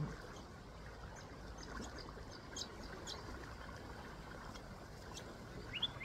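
Quiet outdoor riverside ambience: a steady soft rush with a few brief, faint high bird chirps, and a couple of quick rising chirps near the end.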